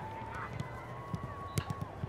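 Soccer balls being kicked and trapped on artificial turf: soft low thuds and a few sharp kicks, the clearest about one and a half seconds in. Under them runs a steady held tone from an unknown source; it steps up in pitch about halfway and fades just before the end.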